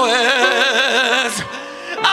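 A singer's voice holding long, wavering vibrato notes over sustained piano chords, then swooping sharply down in pitch about a second and a half in.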